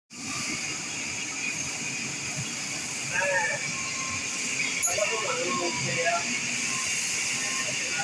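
Electric-motor-driven belt grinders running steadily, with a continuous hiss as small steel surgical-instrument blanks are ground against the abrasive belt.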